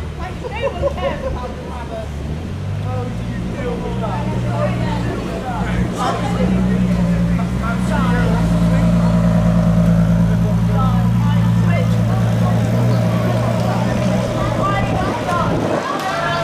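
Ferrari LaFerrari's V12 engine idling steadily, growing louder a few seconds in, with people talking over it.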